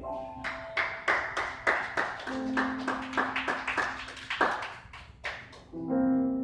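Piano music with hand claps keeping a steady beat of about three a second; the claps stop shortly before the end, when the piano carries on alone.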